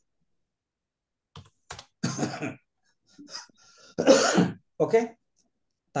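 A person clearing their throat and coughing, in short separate bursts with brief voice sounds between them, after about a second of silence. The loudest burst comes about four seconds in.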